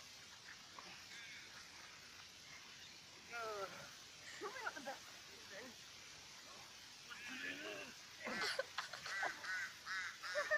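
Human voices laughing and calling out without words: a falling cry a little past three seconds in, then a run of short, repeated laugh-like calls in the last three seconds, with quiet stretches between.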